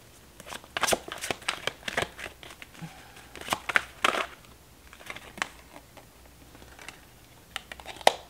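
A tarot deck being shuffled and handled by hand: a quick run of sharp card snaps and flicks over the first four seconds, then softer card sliding with a few scattered clicks.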